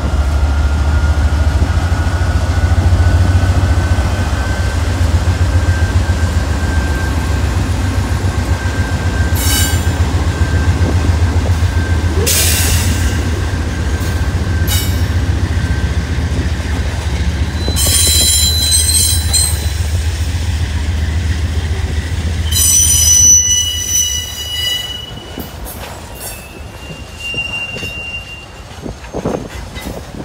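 CSX freight train passing close by: the diesel locomotive's low engine rumble as it goes past, then the freight cars rolling with several short, high-pitched wheel squeals, loudest about 23 seconds in. The rumble dies away near the end, leaving quieter rolling cars.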